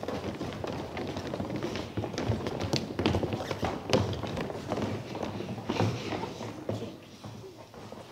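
Children's footsteps running and shuffling across a stage floor: irregular taps and thuds over a low murmur of voices, growing quieter near the end.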